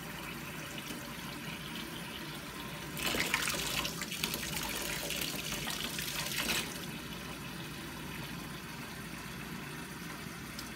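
Kitchen tap running steadily into a stainless steel sink. From about 3 s to 6.5 s it splashes louder and brighter as a bottle cap is held in the stream.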